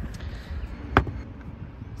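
Plastic latch of a Lexus LS400 factory toolkit case snapping open: one sharp click about a second in, with a fainter click near the start.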